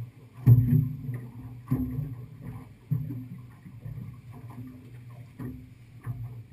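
Choppy water slapping against an aluminium boat hull, with irregular hollow thumps about every second or so. The loudest comes about half a second in.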